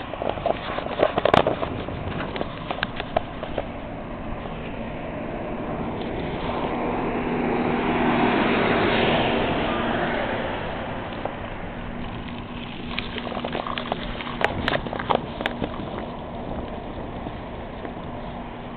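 A car passing on the street: its noise builds to a peak about halfway through and fades away, with a steady low hum from the engine. Scattered sharp clicks and knocks come near the start and again near the end.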